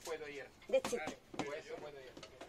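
Speech: a person talking in short bits.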